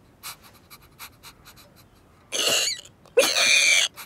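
Cartoon sound effects: a few soft ticks, then two loud, breathy animal noises voiced by a person, the second starting on a short pitched cry and sliding down.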